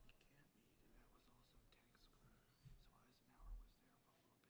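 Near silence, with faint indistinct voices in the background and a soft low thud near the end.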